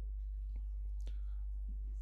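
A pause in speech: a steady low hum, with two faint clicks about half a second and a second in.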